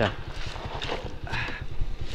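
Small 110 cc motorcycle's single-cylinder engine running at low revs with an even low putter, as the bike is slowed and brought to a stop.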